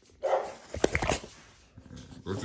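A pit bull-type dog barking: one short bark just after the start, then a sharper, higher cluster of brief sounds about a second in.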